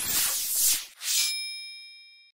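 A swelling whoosh for about a second, then a bright bell-like ding that rings on and slowly fades: a logo-reveal sound effect.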